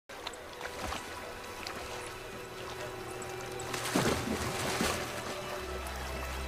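Background music with steady held tones, over water sloshing and splashing as a horse wades through a river; the splashing grows louder about four seconds in.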